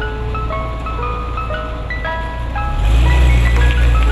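An ice cream truck's chiming jingle, a simple tune of clear single notes, plays over the truck's engine running with a low rumble that grows louder about three seconds in.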